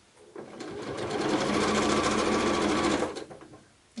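Electric domestic sewing machine stitching a short seam in small fabric scraps: it speeds up about half a second in, runs at a steady fast stitch rate, then slows and stops near the end.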